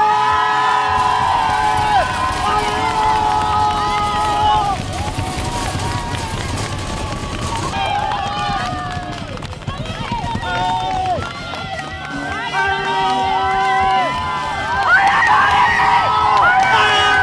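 Several voices shouting long drawn-out yells that overlap one another, over crowd noise.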